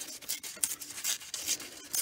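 A sheet of paper being torn slowly by hand into a strip, heard as a series of short, irregular crackles.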